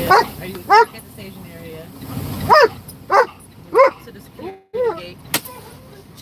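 A dog barking in about six short, high yaps, spaced unevenly through the first five seconds; the dog is excited.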